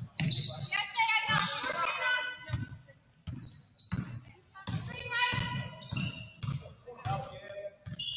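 Basketball dribbled on a hardwood gym floor, about two bounces a second, ringing in a large hall, with high squeaks over it, likely from sneakers on the floor.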